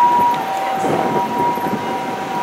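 Japanese ambulance two-tone siren, a high note and a low note taking turns steadily, over city traffic rumble.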